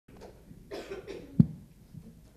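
Two short coughs, then a single loud thump about two-thirds of the way in as a stand microphone is gripped and adjusted by hand.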